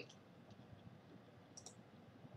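Near silence: faint room tone, with a quick faint double click about one and a half seconds in, typical of a computer mouse being used to scroll and click.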